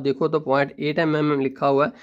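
Only speech: a man talking in Urdu at a steady pace. No other sound stands out.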